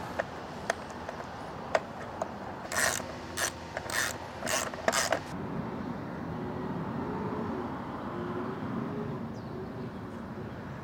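Metal mounting hardware being worked on the Cybertruck's roof: a few sharp clicks, then five short rasping strokes about half a second apart, after which only a quieter background remains.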